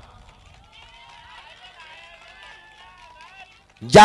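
A rally crowd's many voices calling out together, faint and overlapping, in reaction to the speaker.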